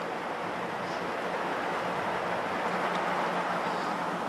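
Steady outdoor ambience of a golf course with a gallery of spectators waiting quietly around the green, a soft noise with a faint low hum under it. The chip shot's club strike does not stand out.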